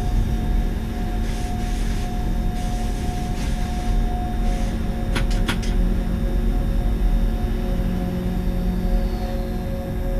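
An electric train running, heard from the driver's cab: a steady low rumble with a constant whine that steps down in pitch partway through. Three quick sharp clicks come about five seconds in.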